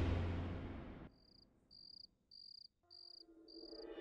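Cricket chirping: five short, high chirps about three-fifths of a second apart. The music before it dies away over the first second, and soft background music fades in near the end.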